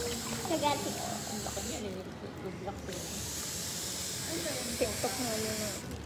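A steady hiss that cuts out for about a second near the middle, with faint voices underneath.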